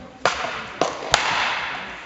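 Three sharp metallic clashes of sword and buckler in a fencing exchange, the third the loudest, each followed by a wash of echo from the large hall.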